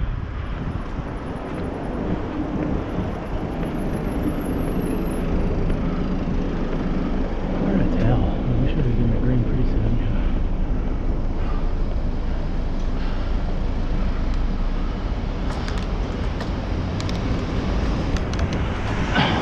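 Steady wind rumble on the microphone with road and traffic noise while riding a bicycle along a city street.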